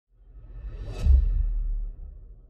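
Logo intro sound effect: a whoosh swells up and lands in a deep boom about a second in, which rumbles on and fades out near the end.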